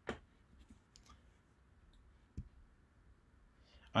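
A few faint clicks at a computer, with a sharper click about two and a half seconds in.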